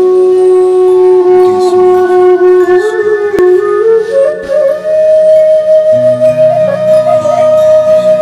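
Slow, sad flute melody: a long low note held for a couple of seconds, then climbing in steps to a higher note that is held for several seconds. A low, soft accompaniment comes in underneath about six seconds in.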